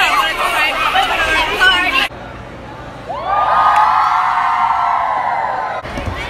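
A crowd of girls shouting and talking excitedly over one another. After an abrupt cut, a group holds one long, high cheer for about three seconds.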